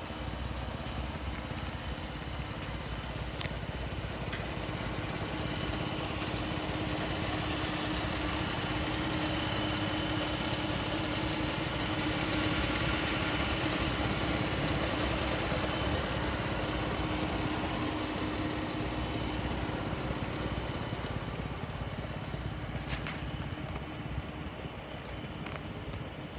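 Dodge Durango's 3.6-litre Pentastar V6 idling steadily with the hood open. It grows louder toward the middle as the engine bay comes close and fades again toward the end.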